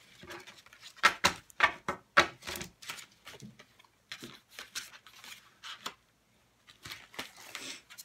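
Game cards being sorted in the hand and laid down on a tabletop: a run of irregular light clicks and flicks of card against card and table.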